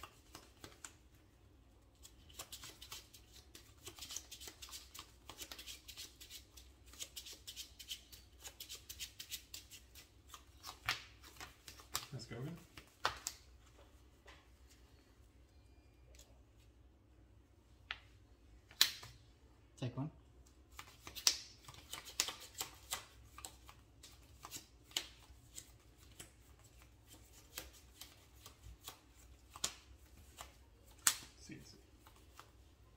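Sleeved playing cards being handled on a playmat: repeated soft clicks, slides and rustles of cards being drawn, fanned, shuffled and set down. The handling comes in busy runs with a quieter lull about halfway through.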